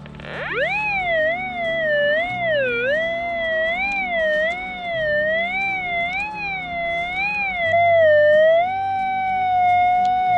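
Golden Mask Deep Hunter Mobile pulse-induction metal detector giving its target tone as the coil sweeps over a coin buried 55–60 cm deep. The tone glides up in pitch at the start, wavers up and down about twice a second with the sweeps, and settles into a steady tone near the end. It is the sign that the detector is picking up the coin at that depth.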